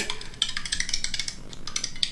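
ASMR recording of a can of Coca-Cola being handled close to the microphone: a run of quick, light clicks and clinks.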